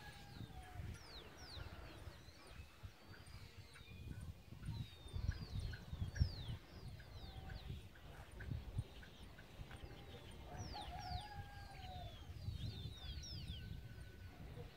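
Small birds chirping throughout in many quick, downward-sliding notes, over a low, uneven rumble of wind on the microphone that is strongest about five to six seconds in.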